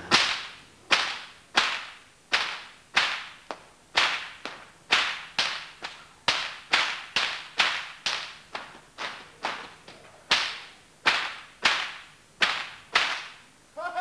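Stockwhip being cracked over and over in a rapid series of about two dozen sharp cracks, roughly two a second, each followed by a brief echo.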